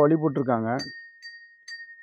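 A small metal bell ringing: one high, steady ring that lingers, with light metallic clinks about a second in and again near the end.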